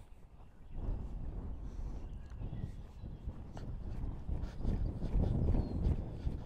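Off-the-track Thoroughbred mare trotting on arena sand: soft, muffled hoofbeats over a low rumble of wind on the microphone, growing a little louder toward the end.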